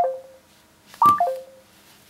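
Samsung Android phone's NFC chime sounding as a tag is held to its back: a short descending three-note tone about a second in, with the last notes of the same chime at the start. The repeating tones come with a failed tag write, the tag not held steady against the phone.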